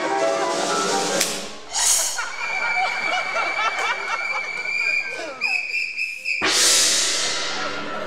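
Live percussion and piano playing cartoon accompaniment: busy drum and piano figures, then a long steady high tone held for about four seconds that breaks off into a loud cymbal crash with a deep drum hit about six and a half seconds in, ringing away afterwards.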